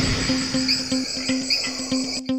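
Crickets chirping: a steady high trill with short chirps repeating about every half second, over background music with a low note pulsing evenly.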